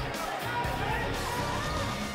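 Background music, steady and without a sudden event.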